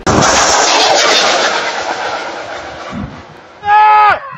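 A sudden, very loud, close blast of a Kornet anti-tank guided missile being launched, its rushing noise fading away over about three seconds. Near the end a man gives a brief loud shout.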